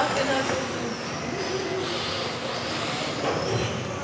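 Electric 1:10 RC touring cars racing around an indoor track, their motors giving a high whine that rises and falls as the cars pass, over background voices.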